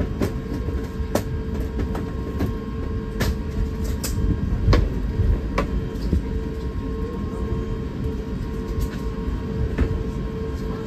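Cabin noise of an Airbus A350 taxiing: a steady low rumble and a constant hum, broken by irregular knocks about once a second as the wheels roll over the joints in the concrete taxiway.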